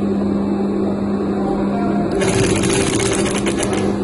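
Sewing machine humming steadily. About halfway through it starts stitching, a rapid even run of the needle as it sews braid trim onto satin.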